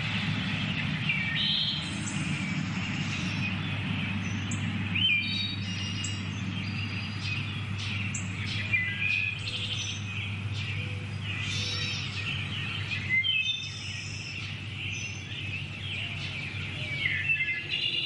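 Birds chirping and calling, many short high chirps and trills, over a steady low hum.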